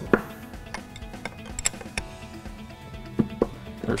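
Background music, with a few scattered sharp metal clicks as a 15 mm wrench works loose the nuts holding the power steering pump to the vacuum pump.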